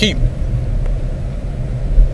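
A steady low background rumble fills the pause, after the last word of a man's speech, with a short click near the end.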